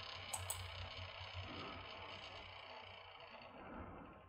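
Two quick computer-mouse clicks about half a second in, over faint room noise and a steady low electrical hum.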